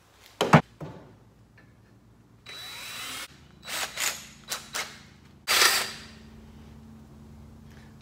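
Cordless drill run in several short bursts while cutting a large hole through the center of a small generator's sheet-metal recoil starter cover, the loudest burst about five and a half seconds in. A sharp knock about half a second in.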